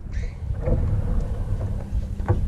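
Wind rumbling on the camera microphone during a tennis rally, with a few faint knocks of the ball being struck and bouncing.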